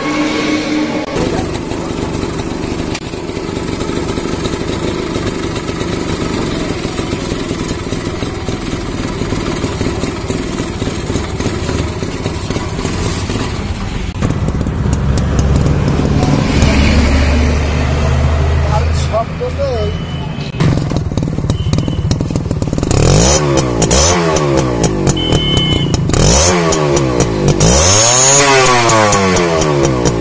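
Honda H100S two-stroke single-cylinder engine idling steadily while its carburettor is being tuned, then revved up and down several times near the end.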